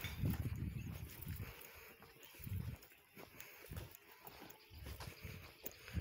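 Faint, dull low thuds and rumbles at an uneven walking pace: footsteps on stone paving and handling noise on a phone microphone carried by someone walking.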